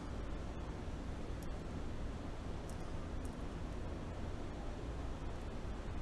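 Quiet room background with a steady low hum, and a few faint light ticks from a thin wire being handled against a keyboard circuit board.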